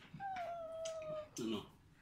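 A single high-pitched, drawn-out cry lasting about a second and falling slightly in pitch, followed by a brief low murmur.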